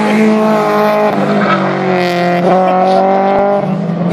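Honda VTEC engine revved hard in the gears, its note climbing and dropping back several times as it is pulled up into the VTEC range and shifted.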